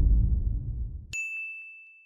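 Logo sting sound effect: a low rumble fading away, then about a second in a single bright ding that rings on and slowly fades.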